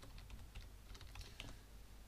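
Faint typing on a computer keyboard: a quick run of about seven keystrokes as a word is typed.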